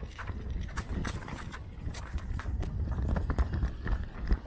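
Pushchair rolling over brick and slab paving: a steady low rumble with many irregular clicks and knocks from the wheels.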